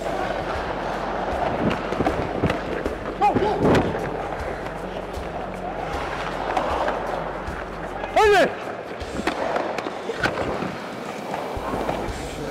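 Ice hockey play heard through a player's body mic: skate blades scraping on the ice and sticks and puck clacking in quick sharp knocks, over arena crowd noise. A short loud shout rises about eight seconds in.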